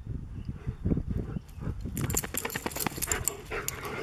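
Standard poodles close to the microphone, panting and moving about. About halfway through comes a quick run of sharp clicks and rattles as they jostle.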